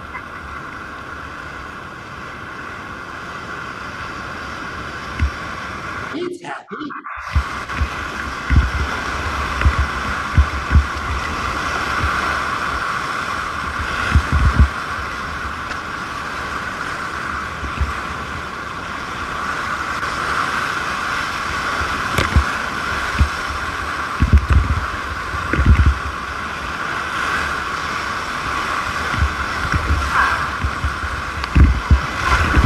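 Whitewater of a river rapid rushing, growing louder over the first several seconds as a tule-reed raft runs into the rapid, with irregular low thumps of water slapping against the raft and camera. There is a brief dropout about six seconds in.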